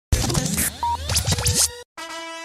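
Intro music sting with turntable-style scratching: fast rising and falling pitch sweeps over a steady bass note. It cuts off suddenly just before the end.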